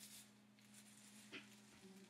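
Faint rasping and squishing of a comb drawn through wet, shampoo-soaked hair, with a short click partway through.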